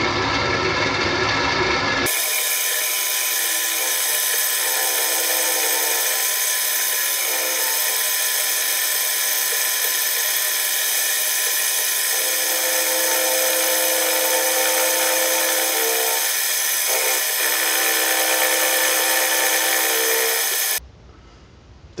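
Benchtop milling machine running, its end mill cutting cast aluminum: a steady mix of motor whine and cutting noise with several held tones that shift in pitch partway through. The sound changes character about two seconds in and cuts off suddenly near the end.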